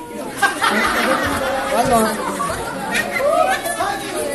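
Many voices talking and calling out over one another, mostly high young voices, a crowd's chatter with no single speaker standing out.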